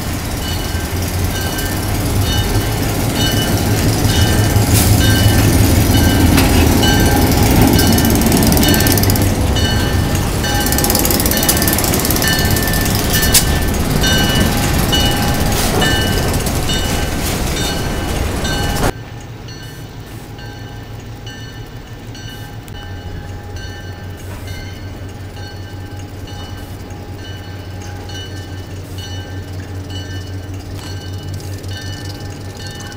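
EMD SW8 switcher locomotive's eight-cylinder two-stroke diesel running as it passes close by on street track, with its bell ringing steadily, about two rings a second. About two-thirds of the way through, the sound cuts suddenly to a quieter, more distant locomotive with the bell still ringing.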